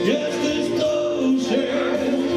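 Live male vocal with instrumental accompaniment: long held notes that slide up into pitch at the start and again about one and a half seconds in.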